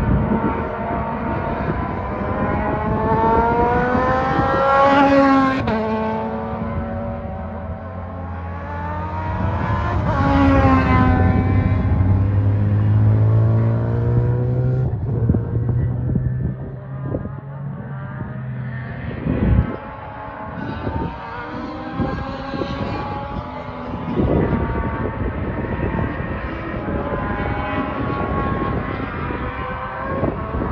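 Open-wheel race car engines at high revs. The pitch climbs twice and drops suddenly each time, the way it does at an upshift, as the cars accelerate past, followed by steadier engine sound from cars further around the circuit. A single sharp pop comes about two-thirds of the way through.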